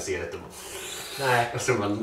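A short rasping, scraping noise, followed by a pitched voice from the soundtrack of a hip-hop music video.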